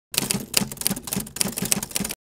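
Typewriter keys clacking in a quick, uneven run of several strikes a second: a typing sound effect for title text being typed out on screen.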